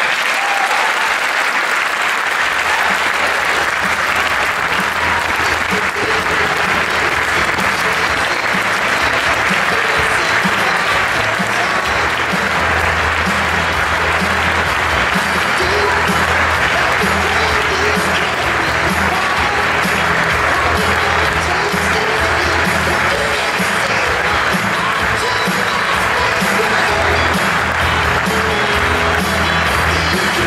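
A large audience applauding steadily, with music that has a steady beat playing underneath.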